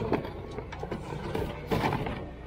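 Household items knocking and clattering against one another in a plastic bin as it is rummaged through, over a steady low hum. The loudest clatter comes near the end.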